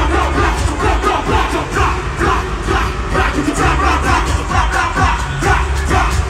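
Loud live music with heavy bass from an arena sound system, with a crowd shouting and singing along.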